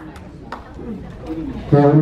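A brief lull in amplified announcing, filled with faint, indistinct voices in the room; the announcer's voice through the microphone comes back loudly near the end.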